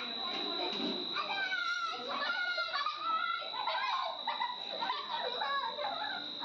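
Background murmur of several overlapping voices, children's among them, with no single speaker in front. A thin, steady high-pitched whine runs under it the whole time.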